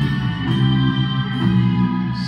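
Electric guitar playing a slow phrase of held notes, changing note about half a second and again about a second and a half in.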